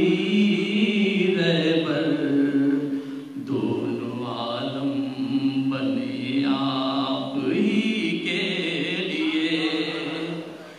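A man's voice reciting Urdu poetry in tarannum, a sung, chant-like style, holding long wavering notes, with a brief dip in loudness about three seconds in.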